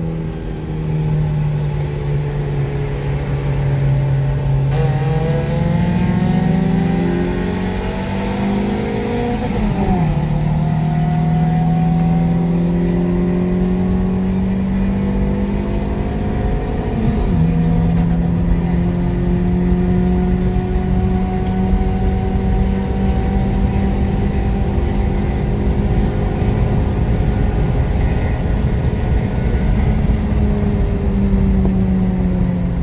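Four-cylinder car engine heard from inside the cabin, accelerating hard at full throttle. Its pitch climbs with the revs, drops sharply at an upshift about ten seconds in, climbs again, and dips at another gear change around seventeen seconds.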